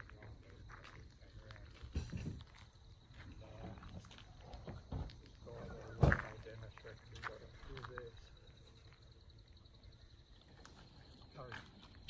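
Faint, indistinct voices of a few people talking outdoors at a boat launch, with a sharp knock about six seconds in.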